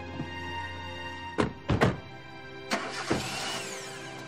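Car doors of a sedan being slammed shut, five thuds in under two seconds, over background music.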